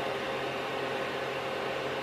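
Creality CR-10 Mini 3D printer running: a steady whir from its hotend cooling fan, with a low hum underneath.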